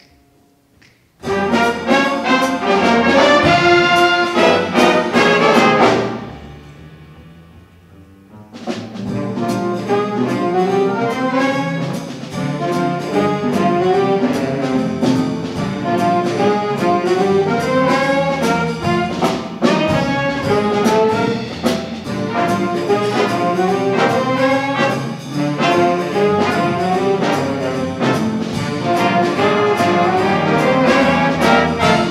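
A school jazz big band of trumpets, trombones, saxophones and rhythm section comes in loudly about a second in. Its opening phrase dies away after about six seconds, and then the full band comes back in about two seconds later and plays on at full volume over a steady drum beat.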